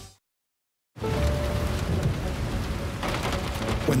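About a second of dead silence, then a heavy rainstorm starts: rain beating down steadily with thunder rumbling underneath.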